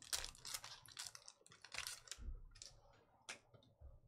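Wrapper of an NBA Hoops basketball card pack crinkling as it is torn open by hand: a quick run of sharp rustles and crackles that stops shortly before the end.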